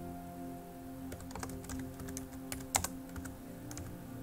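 Computer keyboard typing: scattered key clicks in a few short clusters, over quiet, steady background music.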